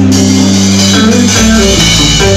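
Live band playing a short instrumental passage between sung lines: strummed guitar over a bass line and drum kit.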